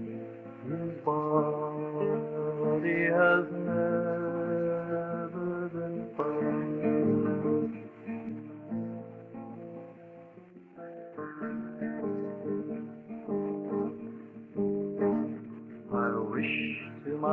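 Acoustic guitar playing an instrumental break in a folk song, with a quieter stretch partway through. The old recording sounds dull, with no treble, and is slightly distorted from noise cleanup.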